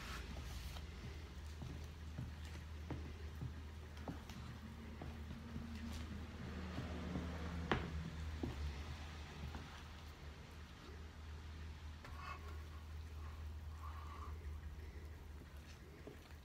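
Spatula stirring thick banana bread batter in a plastic bowl: faint scraping and squishing with scattered light taps, one sharper click a little before halfway, over a steady low hum.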